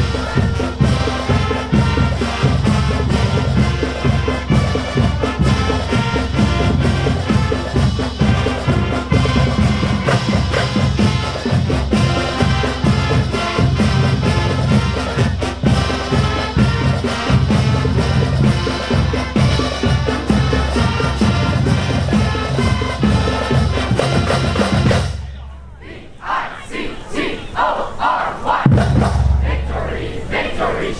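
Chisago Lakes high school marching band playing the school song: trumpets, trombones, saxophones and flutes over a steady drum beat, stopping suddenly about 25 seconds in. Cheering and shouting follow.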